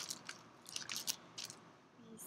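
Plastic bag crinkling in several short bursts as hands rummage in it and pull out a small tube.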